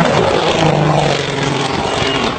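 Mini rally car passing at speed, its engine running hard with a steady note under a loud rush of noise that fades near the end as it pulls away.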